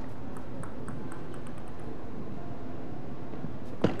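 Steady indoor hall ambience with a few faint ticks, then a single sharp click of a table tennis ball near the end as the next rally begins.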